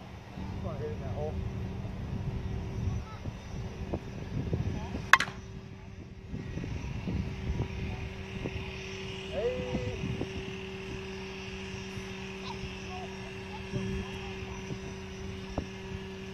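A steady low engine-like drone, with one sharp crack about five seconds in.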